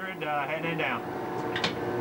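A voice for about the first second, then a steady hum with one short click about a second and a half in.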